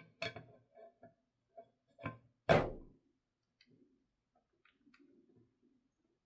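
Light clicks and knocks of a release-film frame being fitted down onto a resin vat, with one louder knock that rings briefly about two and a half seconds in, then faint handling rustle.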